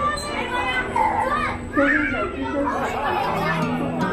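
Children's voices chattering and calling out over one another on a spinning cup ride, mixed with adult voices, with one louder call a little before the middle.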